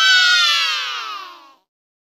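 A single long, high crying wail that falls steadily in pitch and fades out after about a second and a half.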